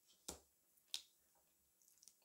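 Two short, faint clicks about two-thirds of a second apart, otherwise near silence.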